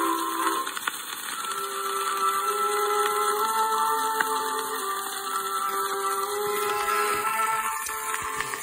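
Old Gennett 78 rpm record playing: orchestral accompaniment holds sustained melody notes over a steady surface hiss.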